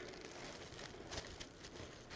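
Faint rustling of tissue paper being lifted out of a cardboard box, with a few light crackles.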